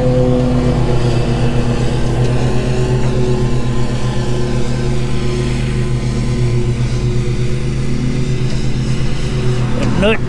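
An engine running steadily at a constant speed: a loud, even, low hum with no changes in pitch.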